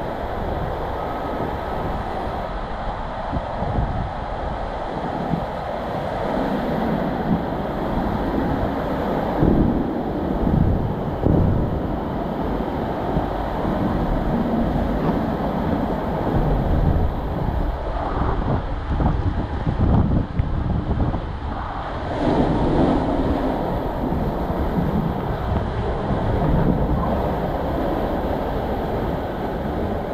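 Water and a rider's body rushing down a fibreglass bowl-and-tube water slide: a continuous rumbling rush of sliding and flowing water, with irregular thumps and splashes as the body knocks against the slide walls.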